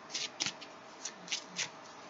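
A deck of tarot cards being shuffled by hand: short papery swishes, about five in two seconds.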